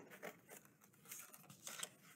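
A few faint snips of scissors cutting through cardstock, with light handling of the paper.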